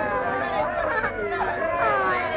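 Several cartoon voices chattering over one another, their pitches sliding up and down, on a narrow-band 1930s film soundtrack.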